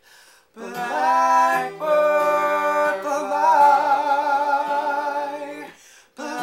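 Acoustic guitar playing, with a voice humming a wavering melody over it without clear words. It starts about half a second in, breaks off briefly just before two seconds, and fades near the end.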